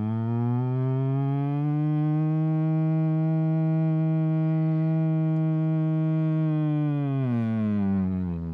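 A man's voice phonating an 'ooh' through a drinking straw, the straw phonation warm-up, as one long low note. It rises slightly into pitch at the start, holds steady, then slides down and fades near the end.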